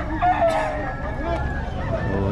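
Several gamecocks crowing, their long calls overlapping, over a low murmur of crowd voices.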